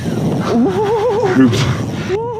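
A man's excited, high-pitched wavering cry, like a drawn-out laugh, held for about a second over steady wind and water noise on a boat deck, with another short rising-and-falling cry at the end.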